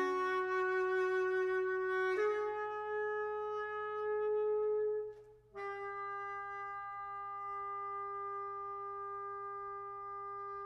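Unaccompanied saxophone playing long held single notes. The band's chord dies away at the start, then one sustained note steps up slightly about two seconds in. After a short break around five seconds, the saxophone holds another long, steady note.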